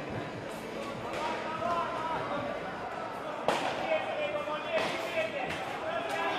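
Indistinct voices echoing in a large sports hall, with a sharp thump about three and a half seconds in and a few lighter knocks shortly after.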